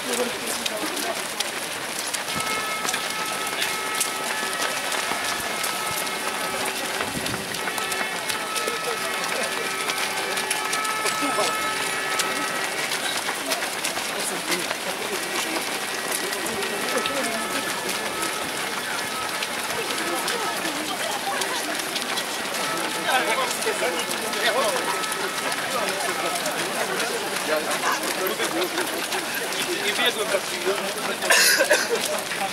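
Footsteps of a large crowd of runners on a wet asphalt road, with indistinct voices of runners and spectators. Faint steady tones come and go through the middle.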